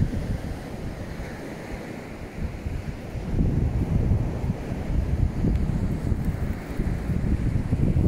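Wind buffeting the microphone in uneven low gusts, weaker for a moment early on and stronger from about three seconds in.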